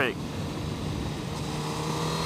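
A Suzuki Hayabusa's inline-four engine running at a steady cruise, an even hum at one pitch, with wind and road noise from riding.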